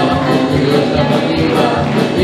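Live worship music: two women singing a song together into microphones over instrumental accompaniment with a steady beat.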